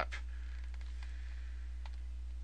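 Room tone: a steady low electrical hum with two faint clicks, one just at the start and one near the end.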